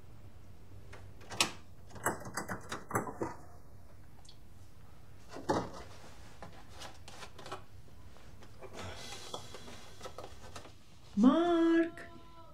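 Clicks and knocks of items being handled and shifted on the shelves of an open refrigerator, in scattered clusters. Near the end comes a short man's groan that rises in pitch, the loudest sound.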